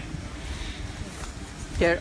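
A pause in speech filled with steady low background rumble and outdoor noise, then a man starts speaking near the end.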